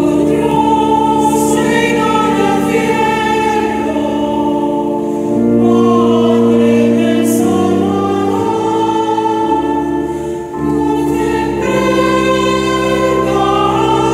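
Choir singing a hymn over sustained organ chords, the closing hymn after the dismissal of the Mass.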